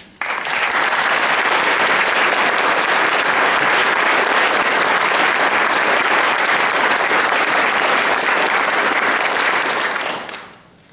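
A large audience applauding loudly and steadily. The clapping breaks out suddenly at the start and begins to die away at the very end.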